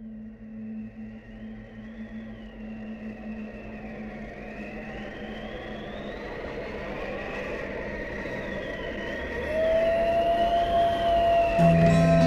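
Ambient intro to a black metal/sludge track: a low drone and a rising hiss with a thin high tone wavering up and down, slowly swelling louder. A steady higher tone comes in about three quarters of the way through, and low notes enter near the end.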